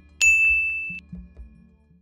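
A single bright electronic ding: a notification-bell sound effect that rings as one steady high tone for under a second and then stops. Quiet background music runs underneath and fades out.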